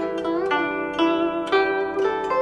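Solo Chinese zither playing a slow melody of plucked, ringing notes. Soon after the start, one note is bent, its pitch wavering up and down.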